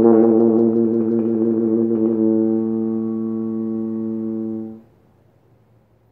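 French horn holding one long low note that slowly gets softer and stops about five seconds in: the closing note of a solo horn piece.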